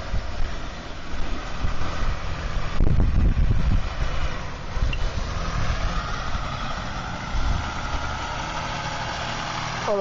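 Land Rover Discovery 4 engine running at low revs as it crawls across a grassy off-road slope, with wind buffeting the microphone, strongest about three seconds in.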